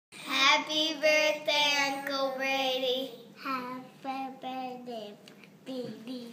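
A child singing, holding long notes for about the first three seconds, then shorter phrases that trail off near the end.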